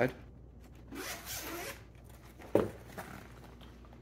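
Zipper of a zippered card binder being pulled open around the case, a rasping run of about a second, with fainter zipper noise after it. A single short knock comes just past the middle.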